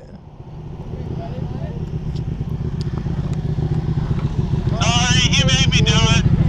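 Motorcycle engine running at low revs with a steady pulsing rumble as the bike rolls slowly, growing gradually louder. A voice cuts in near the end.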